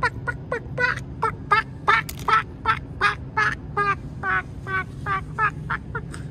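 Duck quacking over and over in a fast, even series, about three to four quacks a second, slowing slightly near the end.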